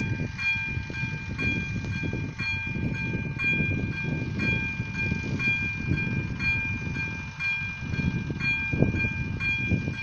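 AŽD ZV-02 electronic level-crossing bell ringing steadily at about two strokes a second, a ringing tone with each stroke, warning that a train is approaching the crossing. A low rumbling noise runs underneath.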